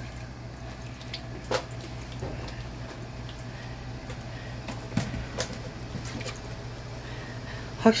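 A few sharp taps and knocks as wet opaleye are handled and laid on a plastic measuring tray, over a steady low hum.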